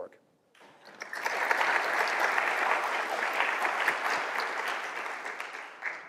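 Audience applauding, many hands clapping at the end of a talk. It builds up about a second in and slowly tapers off near the end.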